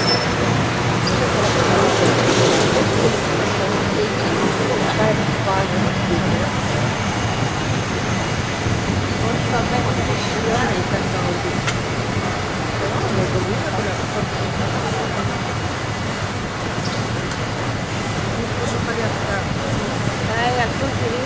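Street traffic and wind on the open top deck of a moving city tour bus, with passengers chattering in the background.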